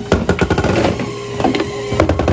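A metal ice cream scoop scraping and knocking in the tubs of an ice cream dipping cabinet, amid counter clatter. A steady machine hum runs underneath.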